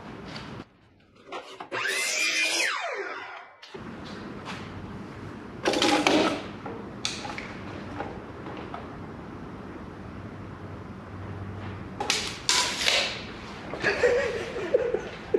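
Workshop handling sounds from measuring and marking a board on a miter saw stand, with no saw running. A rasping, scraping sound lasts about two seconds near the start and stops abruptly. Short scuffs and knocks follow about six seconds in and again near the end.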